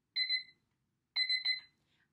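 Digital countdown timer beeping as it runs out. There are two short bursts of high-pitched beeps, about a second apart.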